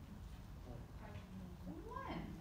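A faint voice whose pitch rises and falls, starting about halfway through, over a steady low room rumble.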